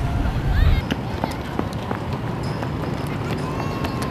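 Outdoor ambience at a football training ground: distant, indistinct voices of players with scattered sharp knocks. A low rumble dies away in the first second.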